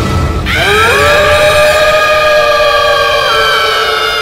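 Music: the intro of a Gurjar rasiya song, long held notes that slide in pitch, with a rising swoop about half a second in.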